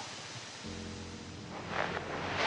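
A low, sustained music drone, a suspense score, comes in about two-thirds of a second in over a faint hiss, with a short breathy sound near the end.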